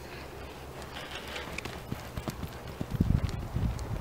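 Hoofbeats of a ridden horse thudding on loose arena sand, getting louder and heavier about three seconds in.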